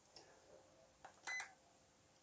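Faint click of the RC car ESC's program button being pressed about a second in, followed by one short high beep from the ESC in programming mode, signalling the parameter value stepping on.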